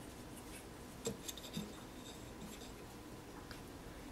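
Faint rubbing and light tapping of hands handling a small clay figure and its stand, with a few soft knocks a little over a second in.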